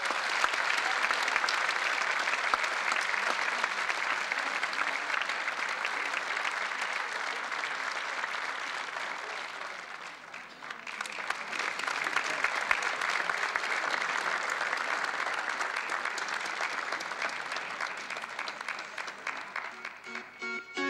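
A large audience applauding. The clapping fades off a little before halfway, then a new round starts abruptly and carries on, thinning out near the end.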